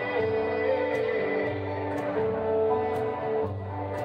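Small live acoustic band playing an instrumental passage with no singing: strummed guitar over a pulsing bass line, and a violin holding long notes over it.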